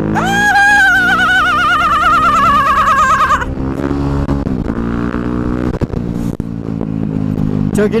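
A man's voice holds one long, wobbling, vibrato-heavy sung note for about three seconds over a KTM dirt bike's engine. The engine then runs on alone, its pitch rising and falling with the throttle.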